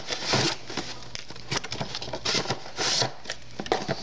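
Cardboard box and plastic toy pieces rustling and clicking as a hand rummages inside the box, pulling the contents out.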